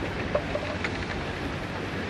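Steady rush of wind and water on a Volvo Open 70 racing yacht under sail, heard through its on-board camera microphone, with a few faint ticks.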